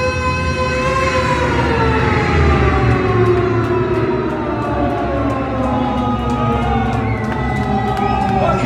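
Distorted electric guitar through Marshall amplifiers holding one long sustained note that, about a second in, begins to slide slowly down in pitch for several seconds, like a siren, over a low rumble from the band's amplification.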